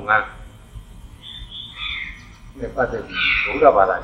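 A Buddhist monk's voice giving a sermon in Burmese, speaking in phrases with short pauses between them.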